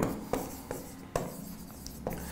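Pen writing on a board: faint scratchy strokes with a few light taps.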